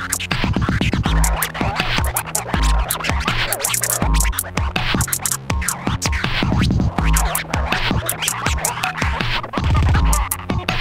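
Hip hop instrumental beat with turntable scratching: heavy kick drums and busy hi-hats under scratched sweeps that glide up and down, no rapping.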